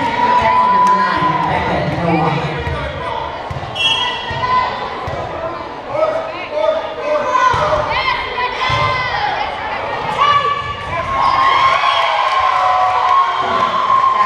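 Indoor volleyball rally in a reverberant gym: the ball being struck and hitting the hardwood floor, with players and spectators calling out and shouting throughout. Sustained cheering near the end as the point is won.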